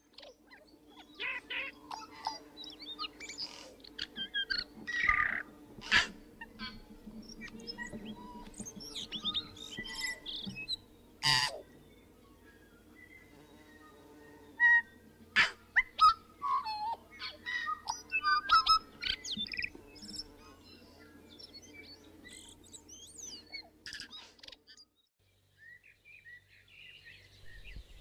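Forest birds calling: many short chirps and whistled notes, scattered throughout and loudest around the middle. A few sharp clicks come through, and a low steady hum underneath stops near the end.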